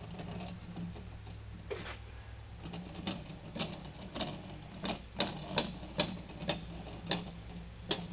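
A smooth steel linear rod rolled back and forth by hand across mirror glass, with faint irregular ticks that come more often in the second half. The rod still has a slight bend, so it wobbles as it rolls.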